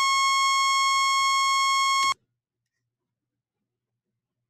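Steady 1,000 Hz sawtooth-wave test tone played from Pro Tools, with a full, even stack of overtones. It cuts off suddenly about two seconds in.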